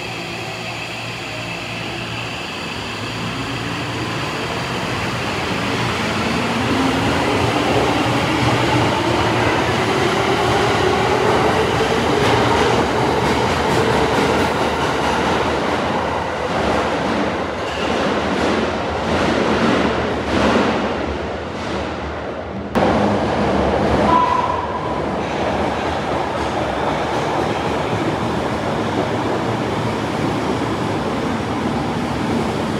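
Tokyo Metro 2000 series subway train pulling out, its traction motor whine rising steadily in pitch as it accelerates away over the running noise. After a sudden cut, an 02 series train runs in along the platform with a steady rumble and a brief high squeal.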